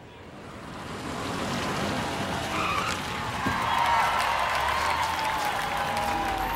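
Cartoon sound effect of a car pulling up: the noise of the approaching car grows louder, then a tyre squeal, sliding slowly down in pitch, as it brakes to a stop.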